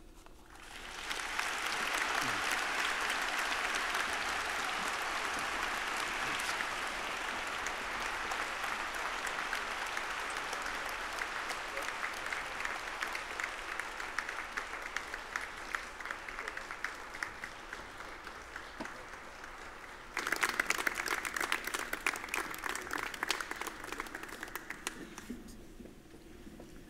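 Audience applause that swells in over the first second or two and slowly tapers. About twenty seconds in it turns suddenly louder and closer, with single claps standing out, then dies away just before the end.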